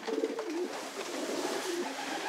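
Racing pigeons in a loft cooing: a run of low, wavering coos.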